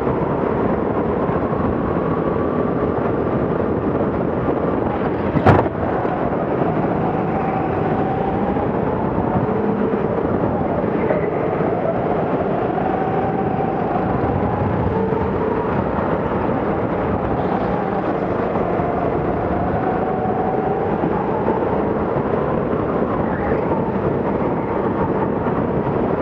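Go-kart motor running hard, heard from the driver's seat, its pitch slowly rising and falling with the throttle through the corners. One sharp knock about five and a half seconds in.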